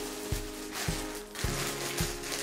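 Background music with a quick, steady beat: low thumps about three a second under held synth chords.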